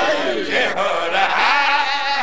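A man's voice chanting a majlis lament in a drawn-out melody, holding long, wavering notes with brief breaks between phrases.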